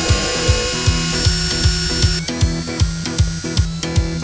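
Cordless drill running as it drives screws into a light-switch box, a steady whine for about the first two seconds, over background music with a steady beat.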